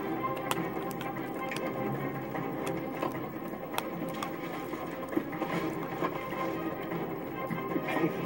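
Music from a television playing in the room, with scattered sharp clicks and crunches from a small dog gnawing a hard chew stick.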